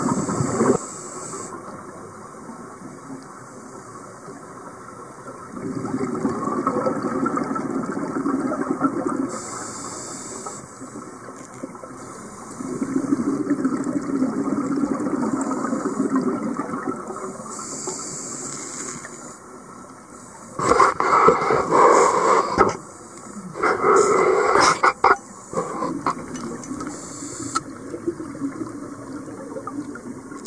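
Scuba diver breathing through a regulator underwater: a short hissing inhale followed by a longer bubbling exhale, repeating about every eight to nine seconds. About two-thirds of the way through come two louder rushing bursts, each lasting a second or two.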